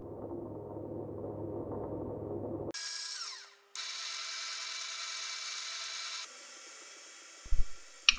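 Milling machine spindle running steadily while power tapping a threaded hole in a metal block. About three seconds in the sound cuts abruptly to a thin, high hiss with a brief dropout, and it goes quieter near the end.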